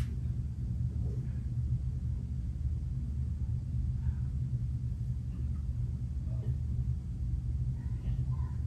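A steady low rumble, with a few faint small knocks now and then.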